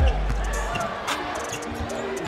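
A basketball being dribbled on a hardwood court, a few separate bounces over arena crowd noise.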